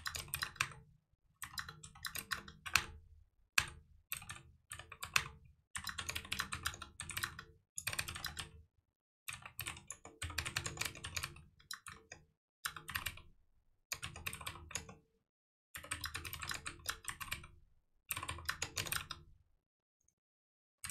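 Typing on a computer keyboard: rapid runs of keystrokes in bursts, broken by short pauses.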